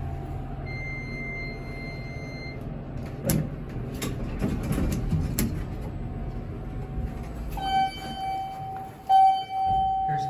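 Traction elevator car travelling with a steady low hum and a few sharp clicks, then coming to a stop. A high steady beep sounds for about two seconds near the start, and a lower electronic tone sounds twice near the end as the car arrives and the doors open.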